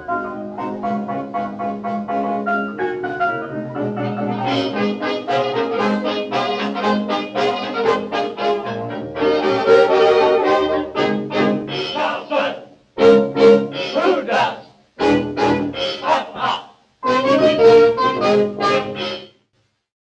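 A 1920s dance orchestra playing the closing bars of a fox-trot instrumentally. About twelve seconds in, the steady playing breaks into short separate blasts with silences between them, and the music stops just after nineteen seconds.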